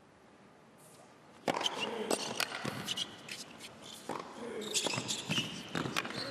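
Near silence, then about a second and a half in a tennis rally begins on an indoor hard court: a string of sharp racket strikes and ball bounces.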